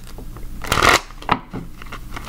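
A deck of tarot cards being shuffled by hand: one loud rush of cards sliding together a little before the middle, then a single sharp snap of the cards shortly after.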